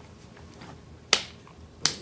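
Two sharp finger snaps, about three quarters of a second apart, over quiet room tone.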